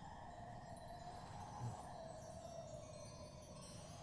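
A faint, steady chime-like ringing tone over light hiss.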